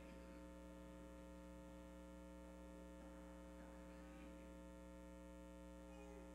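Near silence, with a faint, steady electrical hum.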